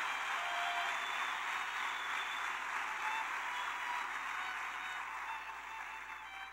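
Congregation applauding, the clapping slowly dying away, with a few faint held tones underneath.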